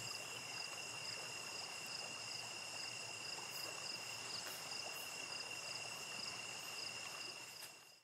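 Insect chorus: a steady high-pitched trill with short chirps repeating two or three times a second over it, fading out near the end.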